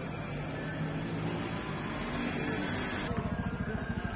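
Motorbike engine running at a steady speed, with wind rushing over the microphone; about three seconds in the sound breaks into a fast flutter.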